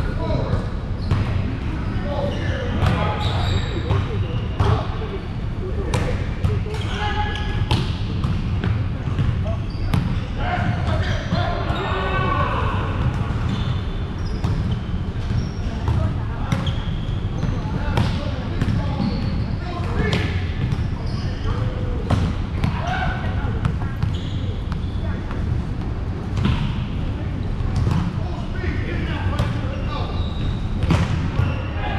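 Volleyball play: repeated sharp smacks of a volleyball being hit and bouncing, at irregular intervals, mixed with players' voices calling out, over a steady low rumble.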